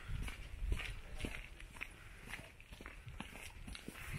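Footsteps on a gravel path, about two steps a second, over a low rumble that is heaviest in the first second.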